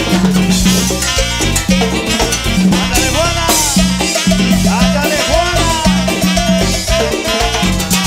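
Live cumbia band playing an instrumental passage. A steady, repeating bass line and drums run under a lead melody that slides between notes through the middle.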